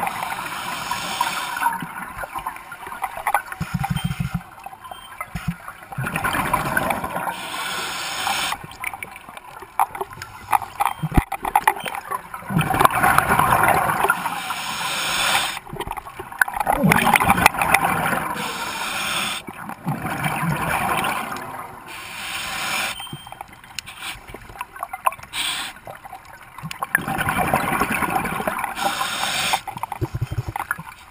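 Scuba diving regulator breathing underwater: a hiss on each inhale and a gurgling rush of exhaled bubbles, in cycles every few seconds.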